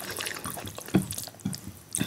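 Close-miked wet eating sounds: fingers squishing boiled rice and dal together on a plate, with mouth chewing sounds, many small moist clicks, and two soft low thumps about a second and a second and a half in.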